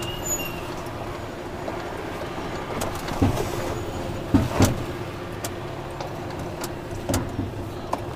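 Tipper lorry's diesel engine running steadily at low speed, heard inside the cab, with a handful of short knocks and rattles from the truck as it moves.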